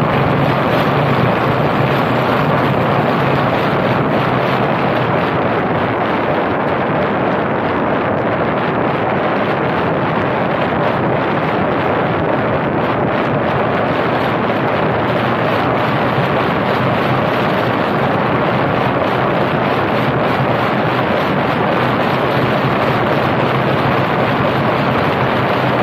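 Steady rush of wind over the microphone of a camera mounted on a car's roof, mixed with tyre and road noise from the car driving along.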